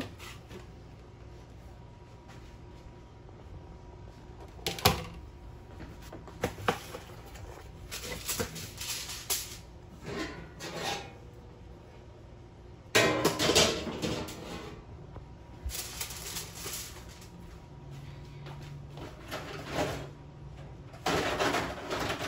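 Aluminium foil being handled and crinkled: scattered rustling bursts, a sharp click about five seconds in, and a louder stretch of crinkling about thirteen seconds in.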